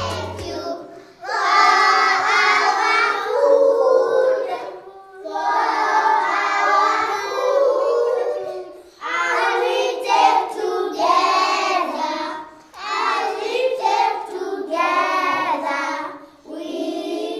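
A group of young children singing a mealtime grace together in unison, in four phrases of a few seconds each with short pauses for breath between. An instrumental music track fades out in the first second.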